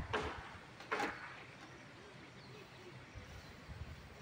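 Washed dishes being set down on a wooden drying rack: a couple of short clattering knocks in the first second, then faint outdoor background.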